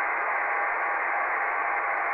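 Yaesu FT-817 receiving on upper sideband at 28.460 MHz with no signal on the frequency: steady static hiss of the band noise, at an S8 noise floor. The hiss is narrow, with no deep bass and no high treble.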